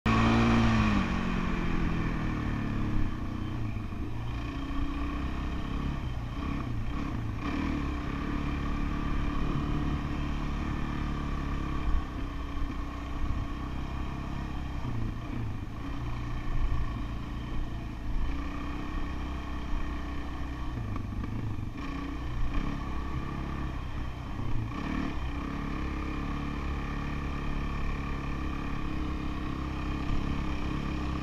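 Dirt bike engine running on an off-road trail, its pitch rising and falling as the throttle is worked, with a few brief louder knocks along the way.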